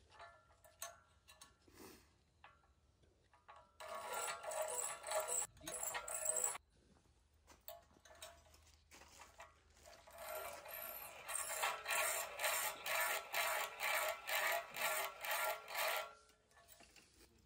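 Hand-cranked piston ring filer grinding a piston ring's end gap during file fitting. There is a short spell about four seconds in, then a longer one from about ten seconds, made of regular grinding strokes about twice a second as the crank turns.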